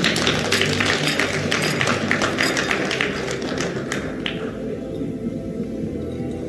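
Audience applauding. The clapping dies away after about four seconds.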